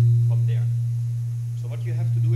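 A loud, steady low electrical hum on the sound system, swelling and fading slightly in level, with faint voices underneath.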